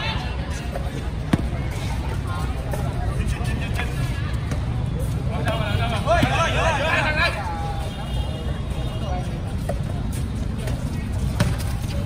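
Voices of players and onlookers at a basketball game over steady background noise. One voice calls out from about five and a half to seven seconds in, and there is a single sharp knock a little over a second in.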